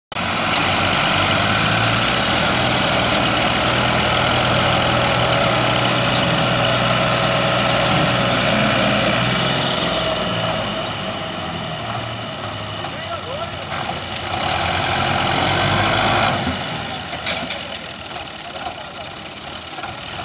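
Farm tractor diesel engine running hard under heavy load, pulling a loaded sugarcane trolley and the tractor hitched to it. The engine runs loud and steady, eases off about halfway through, surges again for a couple of seconds, then drops off about four seconds before the end.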